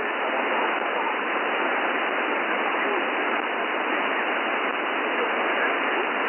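Steady hiss of 40-metre band noise from a NetSDR receiver in lower-sideband mode between transmissions, with no station on the frequency. The sound is cut off sharply above and below by the receiver's 200–3000 Hz sideband filter.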